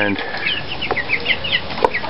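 A flock of caged young meat chickens peeping: many short, high, falling chirps, several a second. Two sharp clicks are heard, about a second in and near the end.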